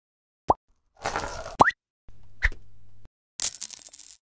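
Logo-ident sound effects: a quick rising blip about half a second in, then a whoosh with a second rising blip. A low hum follows for about a second with a short blip in it, and a bright shimmering sweep comes near the end.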